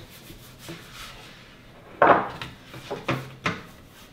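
Hands rubbing butter over a metal bun pan: soft rubbing with a few light taps, and a louder scuff about two seconds in.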